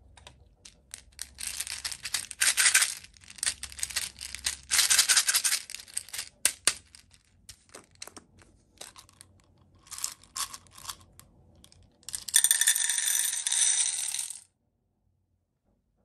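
Small plastic beads clattering out of a little plastic bottle into a metal muffin-tin cup: several dense rushes of clicks, scattered single clicks between them, and a last dense rush that cuts off suddenly near the end.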